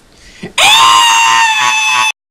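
A man's loud scream, starting about half a second in, rising in pitch at first and then held.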